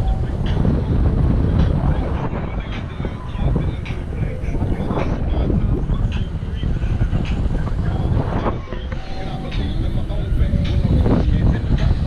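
Airflow buffeting an action camera's microphone in flight under a tandem paraglider: a loud, steady rumble that eases briefly twice.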